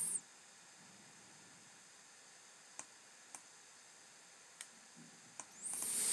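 A few faint, sharp clicks of a stylus tapping on a tablet screen, spaced about a second apart over near silence, then a hiss that swells in level near the end.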